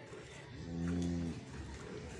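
A Murrah water buffalo giving one short, low moo about half a second in, lasting just under a second, its pitch rising slightly and falling away.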